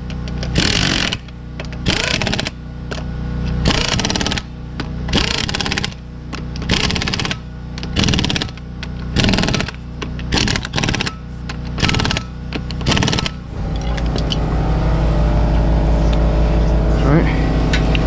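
Impact wrench tightening the lug nuts on a front wheel, in many short hammering bursts about every half second to second. About thirteen seconds in the bursts stop and a steady low hum is left.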